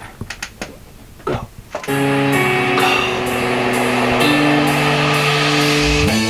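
A few short clicks. Then, about two seconds in, a backing track starts: held synth chords that change every second or so, over a light ticking beat.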